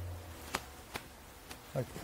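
A low steady hum that fades away shortly after the start, then three faint sharp clicks, before a voice starts to speak near the end.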